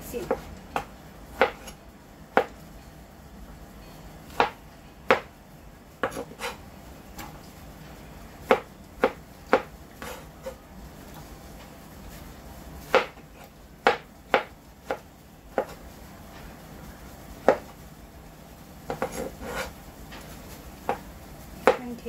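Kitchen knife slicing soft, peeled tomatoes on a cutting board: a sharp knock each time the blade goes through and strikes the board. The knocks come singly at irregular gaps, sometimes a couple of seconds apart, with a quicker cluster near the end.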